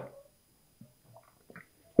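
A pause between a man's spoken phrases: his voice trails off at the start, then only a few faint, brief small sounds before speech resumes.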